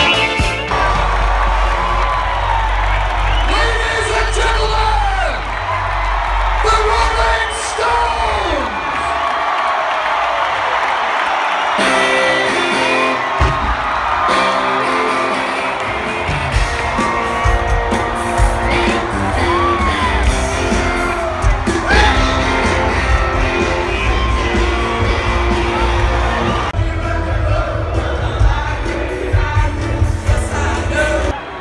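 Rock band playing live in a stadium, with vocals and the crowd cheering and whooping, heard from among the audience. The sound changes abruptly twice, about a second in and near the middle, as between clips.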